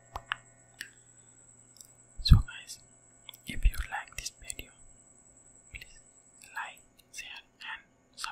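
Unintelligible close-microphone whispering with mouth sounds: a few small wet clicks early on, then breathy whispered bursts, some with low thumps as the breath hits the microphone.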